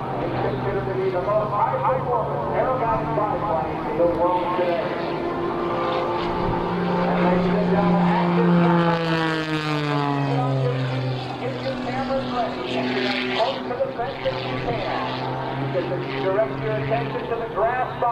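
Propeller engine of a single-engine aerobatic biplane running steadily at an airshow. Its pitch climbs through the middle of the stretch, then drops sharply and settles lower as the aircraft passes. Crowd voices are mixed in underneath.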